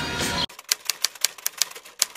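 Music cuts off about half a second in. Then comes a quick, irregular run of sharp clicks, about five or six a second, like typewriter keys, over a near-silent background.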